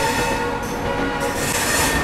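Passenger train running at speed, heard from the open doorway of a coach: a steady rumble of wheels on rail with some faint steady tones. A louder rush of hiss comes through over the last second.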